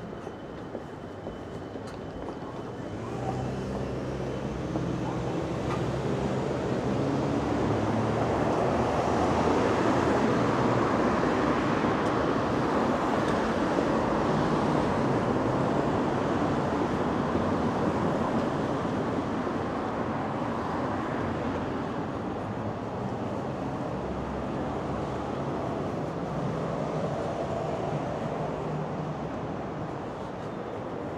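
Road traffic passing on a city street: vehicle engine hum and tyre noise build over several seconds, peak mid-way, then fade, with a second, quieter pass near the end.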